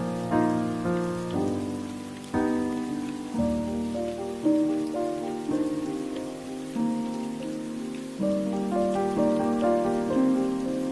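Slow, soft piano music, notes and chords struck about once a second and left to fade, over a steady hiss of rain.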